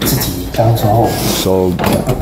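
A man's voice speaking Chinese in a lecture.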